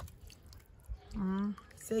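A woman's voice: a short held vocal sound in the second half and the start of a word at the end, after a quieter first second with a few faint clicks and a soft low thump.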